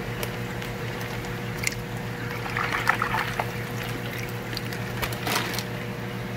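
Water being poured from a plastic fish-shipping bag into a plastic tub, splashing and trickling, with a few sharp clicks from the handled bag. A steady low hum runs underneath.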